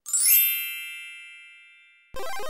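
A sparkle-chime editing sound effect: a bright shimmering ding comes in just after the start, and its high ringing tones fade away over about a second and a half.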